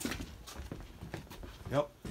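A sharp knock right at the start, then faint scattered clicks and rustling from movement among cardboard boxes, and a man saying "yep" near the end.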